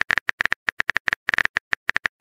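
Phone keyboard typing sound effect: a rapid, slightly uneven run of short clicks, about eight to ten a second, as a chat message is typed out.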